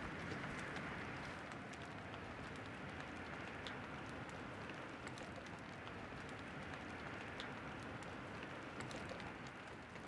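Quiet outdoor ambience: a steady background hiss with a few faint, scattered bird chirps.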